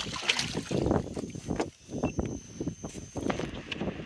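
Water sloshing and splashing against the side of a small boat as a large speckled trout is lowered into the water for release, with wind buffeting the microphone.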